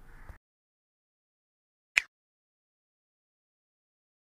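A single short, sharp click about halfway through, in otherwise dead silence: the mouse-click sound effect of an animated subscribe button.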